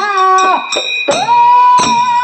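Kannada folk dollu-song music: a voice holds long sung notes through a microphone over drum strokes and small hand cymbals.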